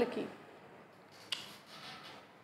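A woman's spoken word trails off, then a pause with faint background hiss and a single brief rustle a little over a second in.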